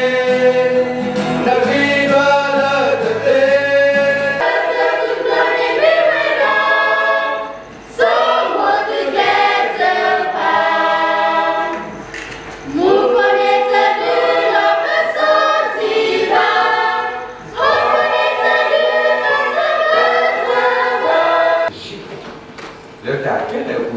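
Mixed choir of men's and women's voices singing together in phrases, with short breaks between them, about every four to five seconds. A low steady accompaniment under the voices stops about four seconds in.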